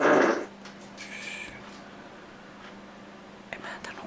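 A man's short, loud wordless vocal noise, a grunt or snort, at the start, followed by quiet with a few faint clicks over a steady low electrical hum.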